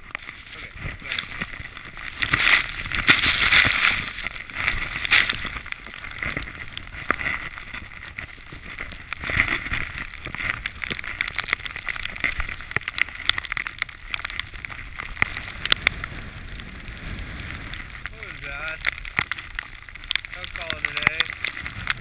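Skis rushing through deep powder snow, with wind buffeting a head-mounted camera's microphone and crackling and rustling against it; the rush is loudest a few seconds in. A voice is faintly heard near the end, as the skier slows.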